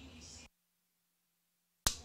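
Faint background sound with a distant voice cuts out to dead silence about half a second in. Just before the end a single sharp click, an audio splice or dropout pop, brings the background back.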